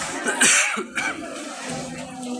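A sharp cough close by, about half a second in, with a smaller one just after, over the murmur of a large street crowd.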